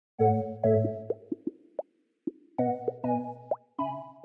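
Short, bright intro jingle: groups of pitched notes with a pause near the middle, broken by several quick rising pop sound effects.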